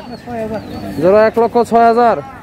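A man's loud, drawn-out calling in several held syllables with short breaks, starting about a second in, over quieter crowd voices.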